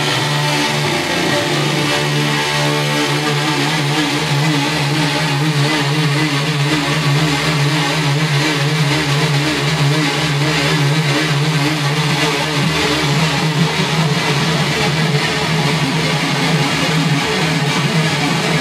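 Electric guitar music, dense and sustained, with a low note held throughout and wavering higher tones above it.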